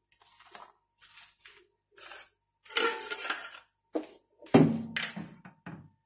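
Metal cup and spoon clinking and scraping against aluminium foil cups and a steel tray in short separate bursts as thick melted soap is scooped and poured into the foil cups.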